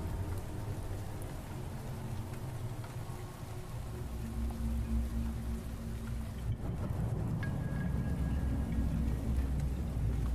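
Soft background music of sustained low notes over a steady bed of rain sound, with a deep low rumble underneath.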